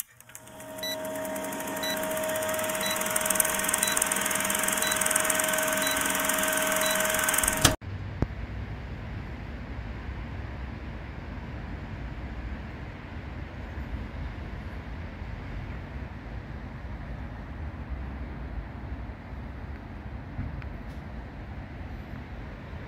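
Old-film countdown sound effect: a steady projector-like whirr with held tones and regular short beeps, growing louder over the first couple of seconds and cutting off abruptly about eight seconds in. It is followed by a steady low rumble of outdoor noise.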